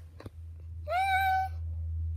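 Tabby cat giving a single drawn-out meow about a second in, rising at first and then held, over a steady low hum.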